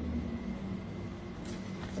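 A steady low hum of room tone, with a faint rustle of jewellery packaging being handled in gloved hands about one and a half seconds in.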